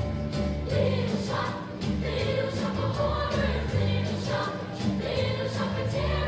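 A group of girls singing together over backing music with a bass line on a steady beat, in a hall's echo.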